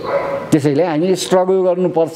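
A man's speaking voice, starting about half a second in.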